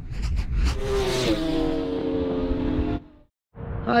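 Logo-intro sound effect: a few quick hits, then a vehicle engine note held for about two seconds, dropping in pitch once, before it cuts off suddenly about three seconds in.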